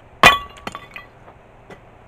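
A heavy sandstone block dropped onto other stone blocks with one sharp, loud clack, followed by a few smaller knocks as it settles.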